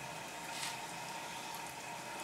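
A 6 kW stainless steel continuous stripping still running, with a steady boiling sound.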